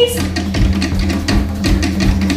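Fast Polynesian drum music: a rapid, steady beat of drums and percussion over a constant bass.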